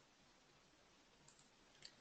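Near silence: room tone with a couple of faint clicks near the end, a computer mouse clicking to advance a presentation slide.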